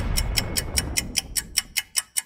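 Countdown-timer sound effect: rapid, even clock-like ticking, about six ticks a second, over a low swell that fades away.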